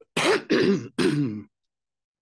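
A man clearing his throat in three short bursts in quick succession.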